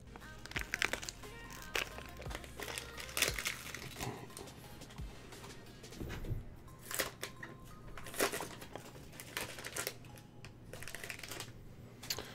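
Faint, scattered crinkling and rustling of packaging being handled, over faint background music.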